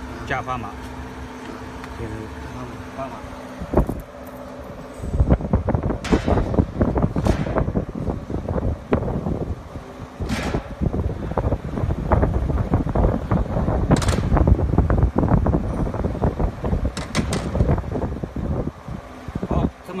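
Steady low hum, then from about five seconds in loud knocking and rubbing close to the microphone with several sharp clacks. This is handling noise while cast-iron 25 kg standard test weights are moved on the rubber belt of a weighing conveyor.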